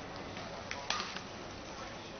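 A badminton racket striking a shuttlecock in a rally: a pair of sharp clicks about a second in, the second louder, over a steady hum of hall noise.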